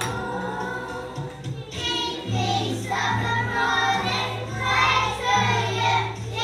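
A group of young children singing together to a music accompaniment with a steady bass line.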